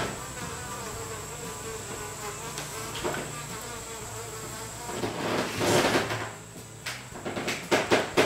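Hornet buzzing, wavering in pitch as if it were flying around, most likely an added sound effect. It grows louder about five to six seconds in, and a few sharp knocks come near the end.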